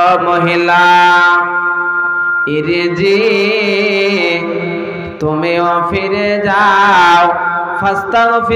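A man's voice chanting a sermon in long, held, tuneful phrases through a microphone, in three or four drawn-out lines with short breaks between them. His pitch wavers on the higher held notes.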